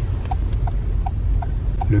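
Ford Focus turn-signal indicator ticking steadily, nearly three ticks a second, over the low hum of the car rolling slowly forward.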